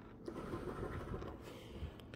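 A metal coin scraping the coating off a scratch-off lottery ticket: faint, uneven scratching.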